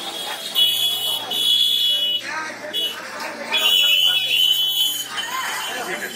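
A shrill, high-pitched alarm-like tone sounds in several bursts, from about half a second in until about five seconds, over background voices.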